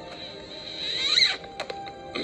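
Film soundtrack music heard through a TV speaker, with high gliding whistle-like tones that swell to a peak about a second in and then break off, followed by a couple of short clicks.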